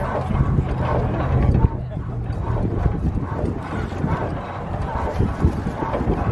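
Antique single-cylinder stationary gas engine running with an uneven, knocking chug, with voices in the background.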